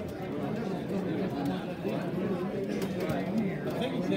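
Indistinct chatter of many people talking at once, voices overlapping without a break, in a large hall.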